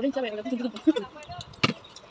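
A woman's voice speaking briefly, followed about a second and a half in by a single sharp click.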